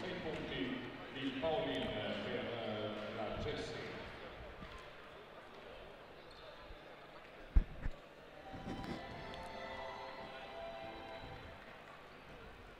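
Basketball arena ambience of voices and music over the PA. About seven and a half seconds in comes the loudest sound: a basketball bouncing on the hardwood court, one hard bounce followed closely by a smaller one.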